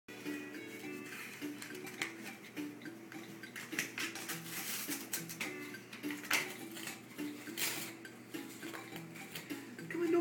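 A dog tearing and chewing cardboard, with repeated sharp crackles and rips as it bites into the box. A simple melody of held notes plays quietly in the background throughout.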